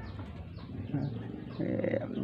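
Faint bird calls in the background, a couple of short calls about a second in and near the end.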